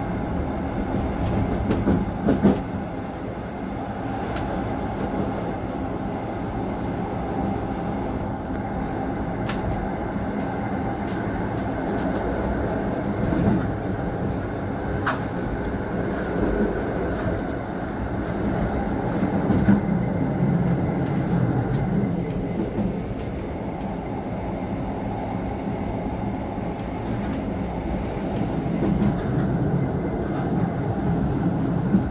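Electric train on the metre-gauge Bernina line running steadily along the track, heard from the cab: a continuous rumble of wheels on rails with a few sharp clicks.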